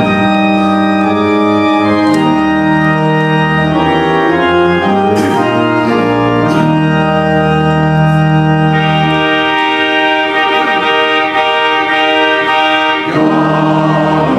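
Church organ playing the introduction to a hymn in sustained full chords that change every second or two. Near the end the congregation and choir begin to sing.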